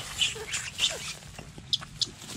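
A rat squealing in short, high-pitched squeaks, four or so, as a dachshund seizes it, with scuffling and clicks from the gravel underfoot.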